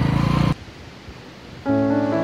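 A Hero Honda CD 100's single-cylinder engine running as the bike rides along, which cuts off suddenly about a quarter of the way in. After about a second of quiet, piano-like keyboard music starts near the end.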